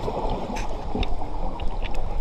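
A scuba diver's exhaled bubbles leaving the regulator, heard underwater as a muffled rushing with scattered crackles.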